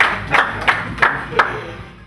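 Hands clapping in a steady rhythm, about three claps a second, fading away near the end.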